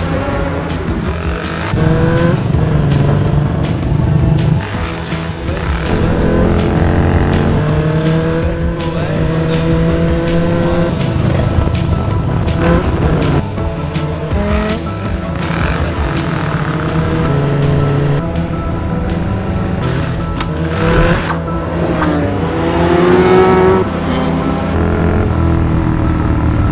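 Motorcycle engine revving hard and shifting up through the gears, its pitch climbing and dropping again several times, over background music.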